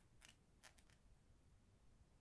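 Near silence broken by a few faint short clicks and scrapes from fingers handling two knurled perfume bottle caps, in two quick groups within the first second.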